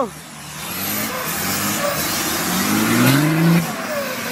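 Off-road 4x4's engine running under load, then revving with a climbing pitch from about two and a half seconds in, dropping off shortly before the end.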